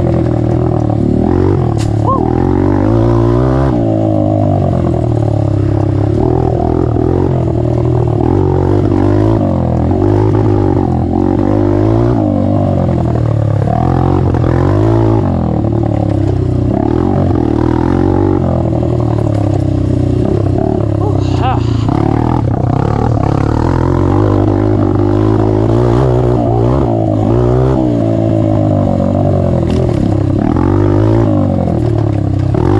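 Honda CRF150F's single-cylinder four-stroke engine with its exhaust baffle removed, revving up and down continuously as the throttle is opened and closed, the pitch rising and falling every second or two.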